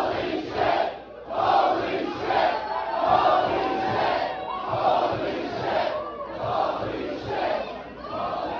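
Packed wrestling crowd chanting in unison, one short phrase repeated about every second and a half with brief gaps between.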